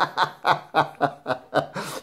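A man laughing: a run of short chuckles, about three or four a second, with a breath drawn in near the end.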